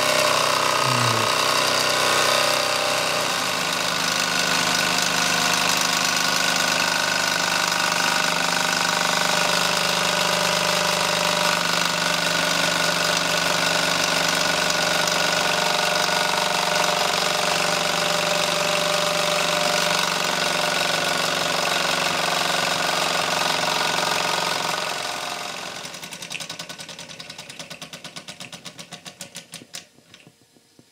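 Mamod SE2 toy live-steam engine, a single oscillating cylinder, running fast with a steady buzzing exhaust beat and steam hiss. Near the end it runs down: the beats grow slower, separate and fainter until the flywheel stops.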